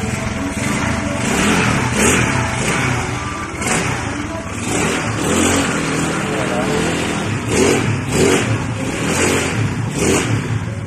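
Yamaha Mio Sporty scooter engine, bored up to 160cc with a stock head and stock exhaust, running on its stand and revved up and down repeatedly.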